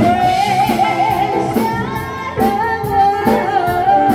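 A woman singing a slow pop song into a handheld microphone, holding long notes with a wavering vibrato, over backing music with a steady drum beat.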